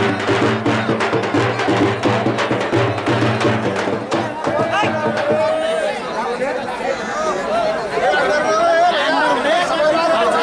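Fast drumming with a rapid beat that stops about four and a half seconds in, followed by voices calling out over crowd chatter.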